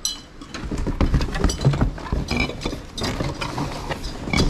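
Household decor being rummaged through in a cardboard box: cardboard rustling and scraping, with many light knocks and clinks of glass and plastic items being moved.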